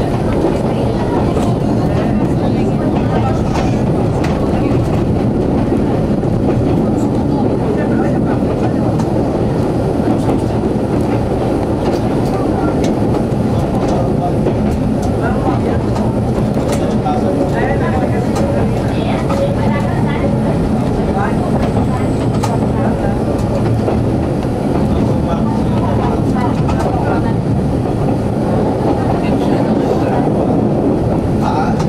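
CP 9500-series narrow-gauge diesel railcar running along the line, heard from the front cab: a steady, loud running noise from the engine and the wheels on the rails.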